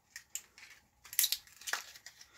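Small packaging handled by fingers: a few short crinkles and rustles as a tiny box is opened, with a sharper one near the end.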